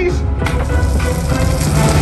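Action-film soundtrack heard over cinema speakers: loud dramatic music, with a rushing noise swelling in from about half a second in.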